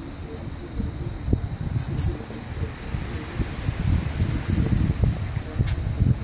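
Wind buffeting a phone's microphone: an uneven low rumble that swells and fades, with a few faint clicks.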